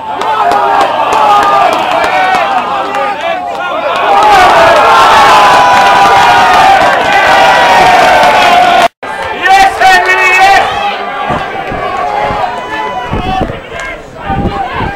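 Rugby spectators shouting and cheering, swelling into loud sustained crowd cheering about four seconds in. The cheering cuts off abruptly at an edit and gives way to scattered shouts.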